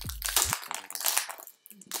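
Foil Pokémon booster pack crinkling and crackling as it is handled and opened by hand, dying away after about a second and a half.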